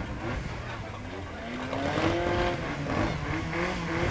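Stock car engines running at low speed, with one engine revving up about halfway through and settling back to a steady note.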